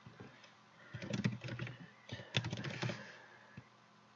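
Typing on a computer keyboard: a quick run of keystrokes about a second in, a second run about two seconds in, then a single click.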